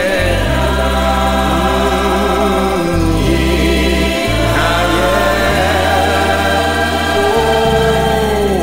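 Gospel worship song: choir singing with wavering, vibrato voices over sustained bass notes that change every second or two.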